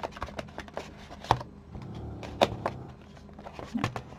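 Paper and card being handled: a patterned paper pocket folder rustling, with a few sharp taps, the loudest about a second in and again about two and a half seconds in.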